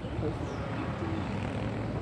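Low rumble of an approaching JR 113-series electric train, with a station public-address announcement in English over it.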